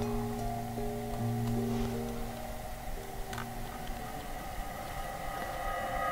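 Church music from the brotherhood's own choir singing the entrance hymn: held chords that change every second or so, thinning out about three seconds in.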